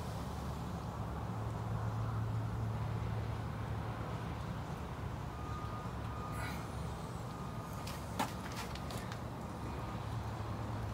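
A steady low hum runs throughout, with a few sharp crackles between about 8 and 9 seconds in from wood pellets burning in a small tin stove.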